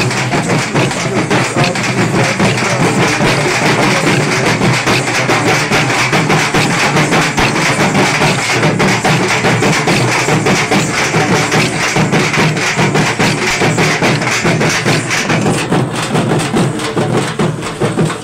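Procession drumming: large two-headed drums beaten with sticks in a fast, dense, steady rhythm, loud and continuous, with other music mixed in.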